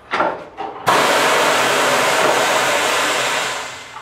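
Steady hiss of compressed air from the tire changer's pneumatic bead breaker, worked by its pedal while breaking the tire bead. It starts suddenly about a second in, holds even and loud, then fades out near the end.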